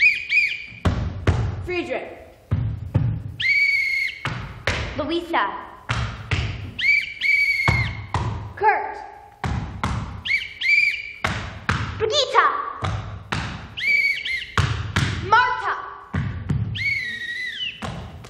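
A whistle blown as a series of short signal calls, one about every three and a half seconds, each with its own little rise and fall in pitch. Between the calls come stamped marching footsteps and heavy heel thuds on a wooden stage floor.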